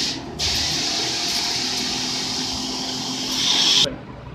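Portable high-pressure washer's spray gun firing a fine water jet, a loud steady hiss: a short burst, a brief break, then about three and a half seconds of continuous spray that stops sharply near the end, with a faint steady hum underneath.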